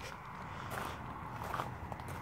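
A few soft footsteps on paving stones over faint background noise.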